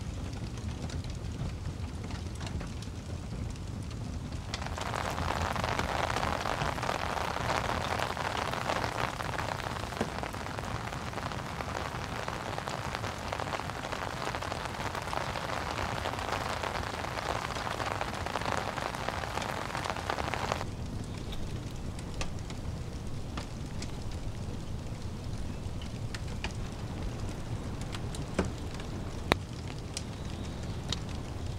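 Rain falling on a tent, with scattered drop clicks. A heavier spell of rain starts suddenly about four seconds in and cuts off suddenly about twenty seconds in.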